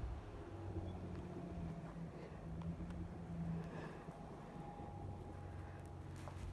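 A motor or engine running with a steady low hum; a faint thin higher tone joins about four seconds in.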